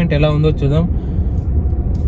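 Steady low rumble inside the cabin of a moving Renault Scala sedan: engine and road noise while driving. A man's voice is heard over it in the first part.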